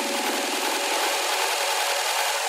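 Electronic dance music in a breakdown: the kick drum and bass are gone, leaving a hissing noise wash with faint sustained tones, and a fast rhythmic pattern in the low mids fades out about half a second in.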